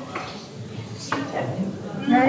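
Indistinct voices of people talking in a room, with a couple of light clicks.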